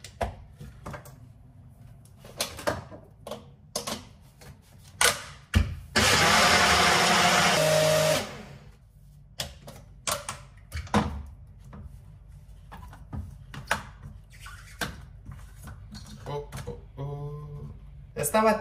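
A compact personal blender runs for about two seconds blending a protein shake, its pitch shifting just before it stops. Clicks and knocks of the cup being seated on and twisted off the base come before and after. The owner says this cheap blender is breaking.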